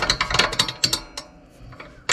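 Small metal clicks and rattles of a nut being handled and tried on the clutch-linkage bolt of a tractor, quick and dense for about the first second, then a few scattered clicks.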